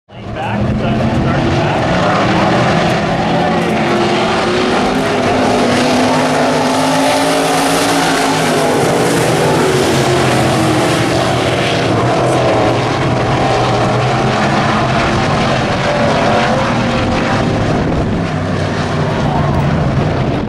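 A pack of IMCA stock cars' V8 engines running hard on a dirt oval, a dense, loud, continuous drone of several engines at once, their pitch rising and falling as drivers get on and off the throttle through the turns.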